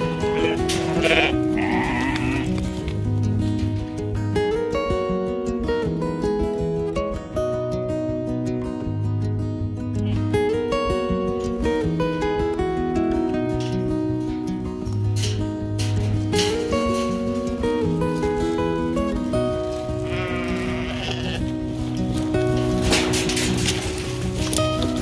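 Sheep bleating over background music: a couple of quavering bleats about a second in, and more near the end.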